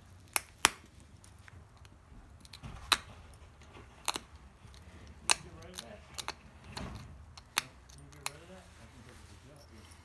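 Copper-tipped pressure flaker taking flakes off the edge of an obsidian point held in a leather pad: about ten sharp clicks at irregular intervals, the two loudest in the first second.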